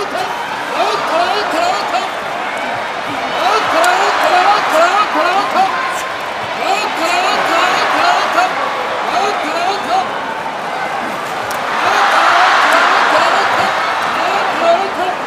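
Sumo referee's rapid, repeated calls of "nokotta", about two or three a second, urging on the wrestlers while they are locked in a clinch, over a noisy arena crowd. The crowd's shouting swells loudly about twelve seconds in.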